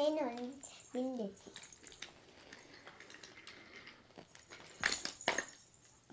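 A child's short vocal sounds at the start. Then, about five seconds in, a few sharp clicks and knocks as toy trains and wooden track pieces are handled.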